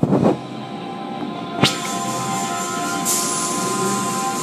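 Automatic car wash machinery running: hanging cloth strips and brushes sweeping over the car amid water spray, over a steady mechanical hum. There is a short burst at the start and a single sharp knock about a second and a half in.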